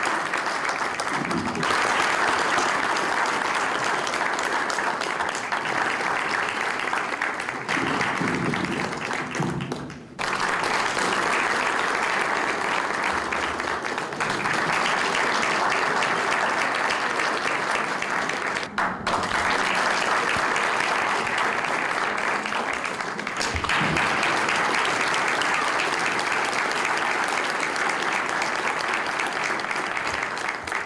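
Audience applauding steadily, with two short dips about a third and about two-thirds of the way through.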